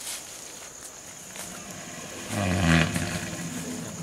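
Elephant giving a single short, low groan about two and a half seconds in, fading away within a second.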